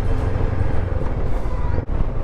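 Honda NX500 parallel-twin engine running as the bike picks up speed, mixed with wind and road rumble, under a bed of background music. The sound drops out briefly near the end.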